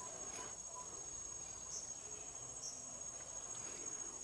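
Faint outdoor daytime ambience with a steady high-pitched insect trill, typical of crickets. A few faint short chirps stand out over it.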